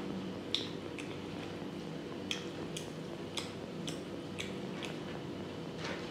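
Close-miked eating sounds of rice and pork curry: irregular sharp wet clicks and smacks, about eight in six seconds, from chewing and from fingers working the rice. A steady low hum runs underneath.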